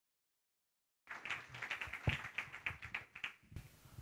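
Dead silence for about a second, then faint scattered clapping from a seated audience: irregular claps, several a second, thinning out and stopping shortly before the talk begins. It is the tail of applause after the speaker's introduction.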